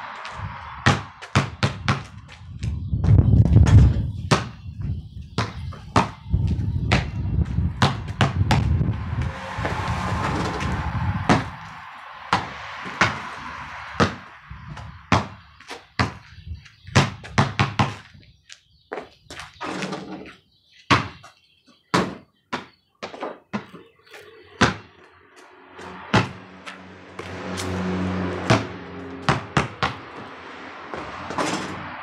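Basketball pound-dribbled on a concrete driveway: runs of quick, sharp bounces with short pauses between them. A deep rumble lies underneath for roughly the first ten seconds.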